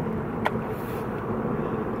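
Steady low rumble of a car's interior, with one short click about half a second in.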